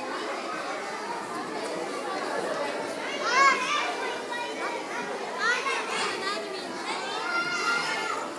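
A group of young children chattering and calling out together, with a few high-pitched shouts standing out about three seconds in and again near six seconds.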